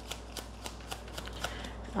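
A deck of tarot cards being shuffled by hand: faint, scattered soft card clicks.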